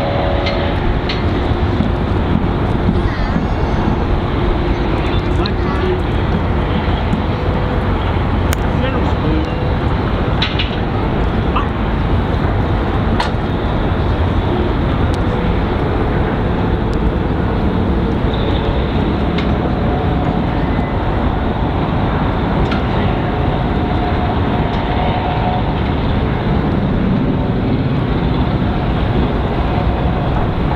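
Murmur of a large outdoor crowd with faint scattered voices, over a steady low rumbling noise and a few light clicks.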